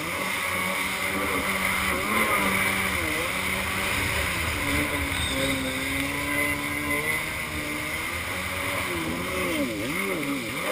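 Kawasaki X2 stand-up jet ski's two-stroke engine running under way, its revs rising and falling with the throttle, with a sharp dip and recovery near the end. Water spray hisses against the hull throughout.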